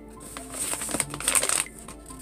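Rustling and scraping of a hand handling things right next to the microphone, loudest in the middle, over soft background music.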